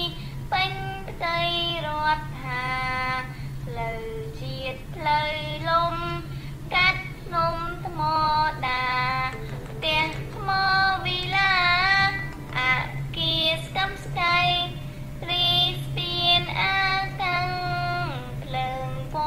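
A single voice chanting a Khmer poem in the kakagati verse meter to a sung melody, in short phrases with held notes that bend in pitch. A steady low hum runs underneath.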